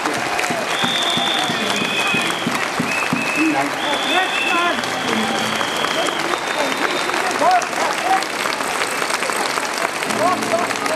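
Large crowd applauding, with voices and calls mixed into the clapping. Several long, steady high-pitched whistle tones sound above it, the longest around a second in and again around four seconds in.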